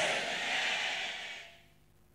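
A man's breathy exhale into a handheld microphone, a soft hiss that fades away over about a second and a half.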